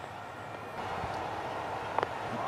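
Stadium crowd noise at a cricket match, a steady wash of many voices that swells slightly about a second in.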